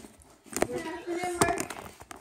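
A man's brief speech, with two sharp clicks about half a second and a second and a half in.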